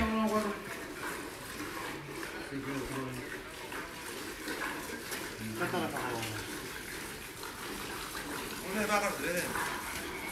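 Hand-milking a Holstein cow: streams of milk squirting steadily into a metal pail partly filled with milk.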